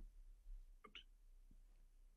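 Near silence: faint room tone with a low hum and a faint, brief sound about a second in.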